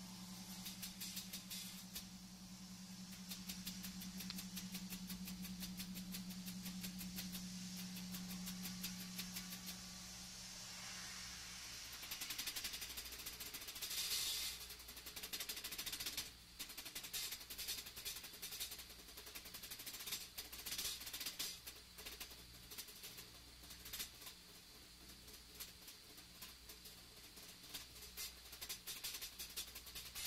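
Quiet stage sounds from a live rock band between songs: a steady low held tone for about the first ten seconds, then loose drum and cymbal hits with no full song under way.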